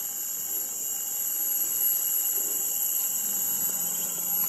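Steady, high-pitched insect chorus in tropical forest, holding two unbroken high tones.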